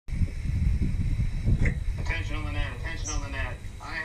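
Low rumble of wind buffeting the microphone, then a voice speaking from about two seconds in.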